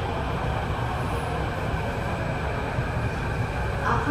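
Kawasaki–CRRC CT251 metro train heard from inside the carriage: a steady low rumble of the train running slowly into a station.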